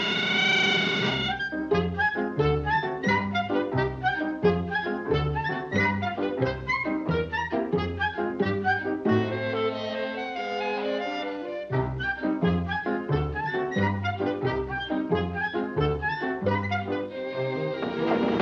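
Orchestral cartoon score led by brass and woodwinds. It opens on a held chord, then plays a brisk, bouncy rhythm of short notes over a plucky bass line. About halfway through it eases into a softer held passage for a few seconds before the bouncy rhythm picks up again.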